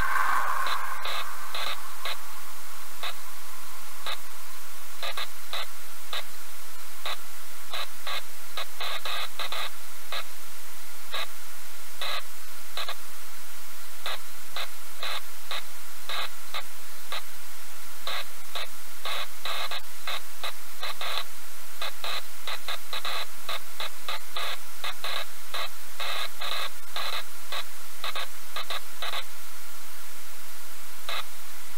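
Steady loud hiss like radio static, broken by irregular short crackling clicks that come in clusters.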